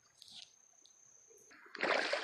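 Near silence with a faint steady high-pitched whine, then, near the end, water splashing and sloshing at the river's edge as a hooked fish is hauled in on the bank pole line.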